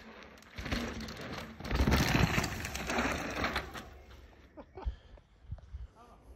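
Mountain bike rolling down a bare rock slab and passing close by: knobby tyres on rock, loudest about two seconds in, then fading away, with a few faint clicks near the end.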